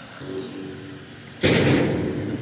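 A sudden loud thump about one and a half seconds in, as the hose's white plastic pipe end drops into the borewell casing, fading into a lower rumble.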